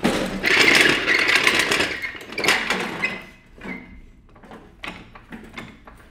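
A go-kart being pushed across interlocking plastic garage floor tiles, its wheels and frame rattling, loudest in the first two seconds. After that it quietens to a few scattered clicks and knocks.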